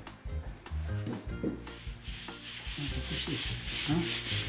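A hand rubbing flour over a rolled-out sheet of pasta dough on a plastic tablecloth: a dry rubbing that starts about halfway through and keeps going. Before it come a few low knocks as the wooden rolling pin is handled.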